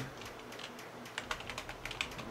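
Typing on a computer keyboard: a run of short, irregularly spaced key clicks.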